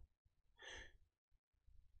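Near silence, with one short faint sigh a little under a second in.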